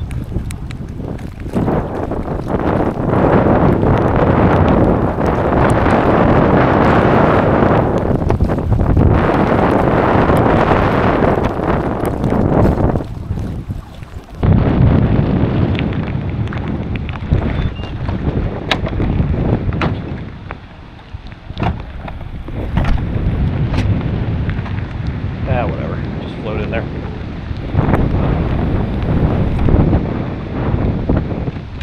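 Strong wind buffeting the microphone over choppy water splashing against a moving kayak's hull, in a storm. Scattered sharp ticks, like raindrops striking the camera, run through it.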